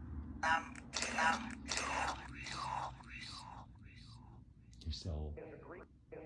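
Necrophonic ghost-box app playing a rapid string of short, whispery, speech-like fragments, each about half a second long, then a lower voice-like sound near the end. These are the fragments the listeners take for spirit voices answering their questions.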